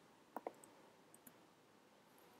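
A few faint clicks of a computer keyboard and mouse over near silence, two close together shortly after the start and a few softer ones later.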